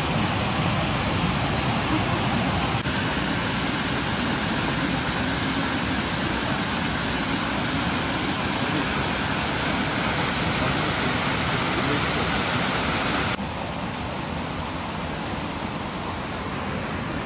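Steady rush of flowing water. It changes abruptly about three seconds in and turns quieter a few seconds before the end.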